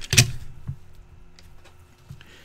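A short, sharp crackle of a foil trading-card pack wrapper being torn open about a quarter second in, followed by a faint click and then only a low steady hum.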